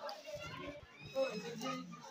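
Indistinct background chatter of several voices, children's voices among them, with no clear words.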